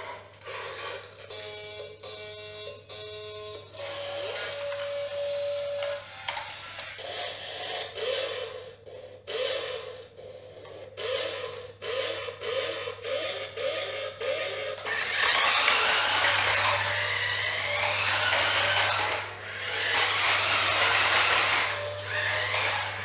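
VTech Switch & Go Dinos Bronco toy playing electronic beeps, a held tone and a run of short rising chirps through its speaker as it transforms from triceratops to car. About fifteen seconds in, a louder steady noise takes over as its electric motor drives it across the tiled floor.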